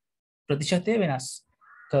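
A man's voice speaking a short phrase of lecture after a half-second pause, followed by a faint, brief higher-pitched sound just before the end.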